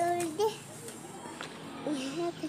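A young child's voice making short vocal sounds, once at the start and again near the end.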